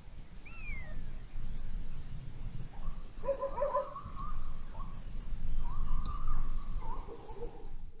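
Animal calls over a low steady rumble: a short falling whistle near the start, then wavering, drawn-out calls from about three seconds in, the last one held for just over a second.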